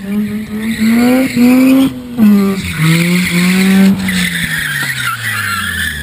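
Mazda RX-8's rotary engine revving high through a drift, the pitch rising and dipping, with a brief cut in the revs about two seconds in. The tyres squeal, loudest in the second half, as the car slides toward the camera.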